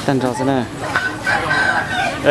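A rooster crowing, one call held for about a second in the second half, over people's voices.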